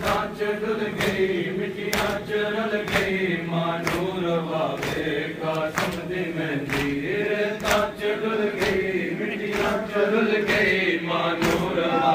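Men's voices chanting a noha together, kept in time by sharp chest-beating slaps (matam) that fall at a steady beat of about once a second.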